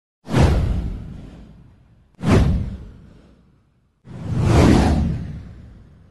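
Three whoosh sound effects for an animated title card. The first two start suddenly and fade away over about a second and a half; the third swells in over about half a second before fading.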